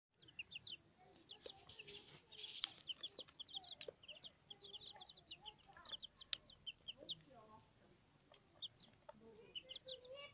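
Young chicks peeping: a rapid, continuous run of short high-pitched cheeps, several a second, with a few sharp clicks and some lower, softer calls.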